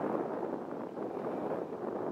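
Steady rushing noise of wind and choppy river water, with wind on the microphone.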